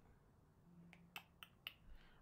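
Four short, sharp computer mouse clicks about a quarter second apart, over near silence.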